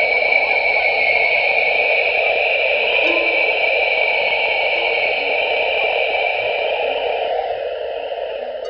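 Sonification of Webb's NIRCam image of the Southern Ring Nebula: a steady, hissing electronic wash in two bands, one middle and one high, with faint short low notes scattered under it. The wash eases off near the end.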